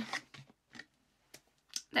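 A few light clicks and taps from a paperboard box being handled, spaced irregularly over about a second and a half.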